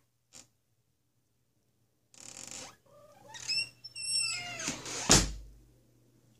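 A wall light switch clicking sharply about five seconds in, the loudest sound here, as the ceiling light goes off. Before it, a high, wavering call with gliding pitch.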